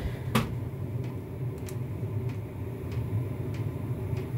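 Steady low electrical hum from a 24 V off-grid inverter running under a heavy load of about 1.9 kW, with a sharp click about half a second in and a few faint ticks after.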